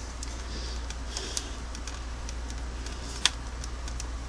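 Faint scattered metal ticks and one sharper click about three seconds in, as vise-grip pliers turn a broken screw out of its threads in an aluminium sewing-machine casting, over a steady low hum.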